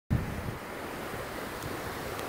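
Steady rushing of wind and ocean surf, with low wind rumble on the microphone strongest in the first moments.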